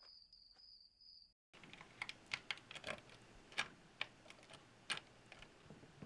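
Faint steady high trill of crickets, cut off abruptly about a second and a half in. Then a quiet room with a string of irregular sharp clicks and taps.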